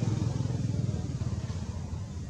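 A steady low rumble with a fluttering texture, strongest about half a second in.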